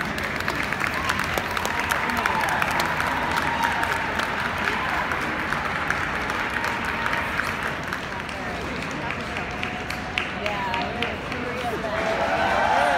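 Spectators clapping over a murmur of crowd chatter, the clapping heaviest in the first half.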